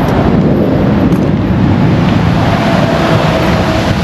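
Loud steady outdoor rumble: wind buffeting the microphone over the noise of lorries nearby, with a faint steady tone in the second half.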